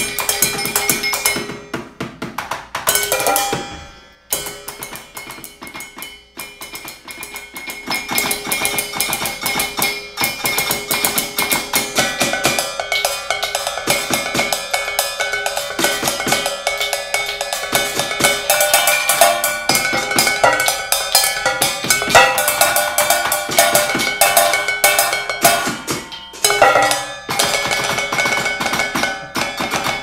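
Percussion quartet playing kitchen objects as instruments: pots, pan lids, plates and bowls struck in fast interlocking rhythms, the metal lids and pots ringing. The playing thins to a quieter stretch about four to seven seconds in, then builds again.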